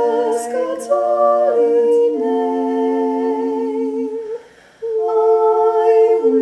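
A woman singing a slow meditative canon chant a cappella, several parts sounding together in harmony on long held notes, with a brief break for breath a little after four seconds in.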